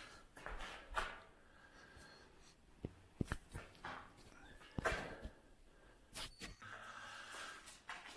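Faint footsteps and scuffs on a gritty concrete floor, with a handful of sharp clicks between about three and six seconds in, in an echoing concrete room.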